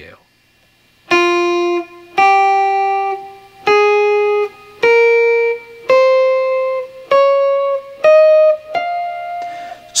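Electric guitar playing a minor scale slowly, one note at a time: eight clean single notes, each ringing about a second, stepping upward through one octave. The playing starts about a second in.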